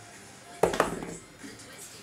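A red six-sided die thrown onto a tabletop, landing with a sharp knock about half a second in and clattering briefly before it comes to rest.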